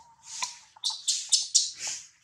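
Baby monkey squealing in a run of short, high-pitched cries that come faster and loudest in the second half.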